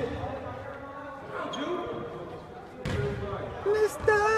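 Basketball bouncing on a court: two sharp thuds about three seconds apart, among background voices.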